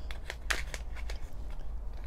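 Small paper seed packet being pulled open by hand: a quick run of short paper crinkles and rustles, the sharpest about half a second in.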